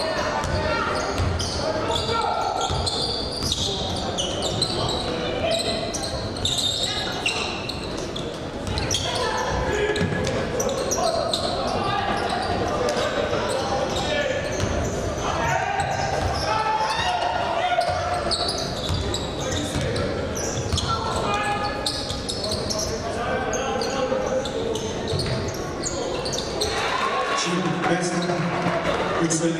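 Court sound of a live basketball game in a large, echoing hall: a basketball bouncing on a hardwood floor and players' voices calling out.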